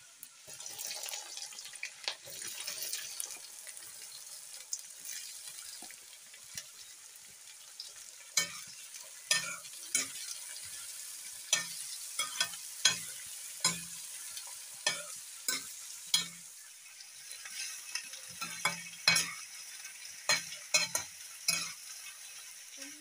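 Sliced bitter gourd sizzling as it fries in hot oil in a metal kadai. From about eight seconds in, a metal spatula stirring it knocks and scrapes against the pan again and again, one or two clacks a second.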